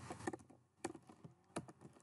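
Faint computer keyboard keystrokes: about half a dozen separate key presses, spaced unevenly, as code is typed.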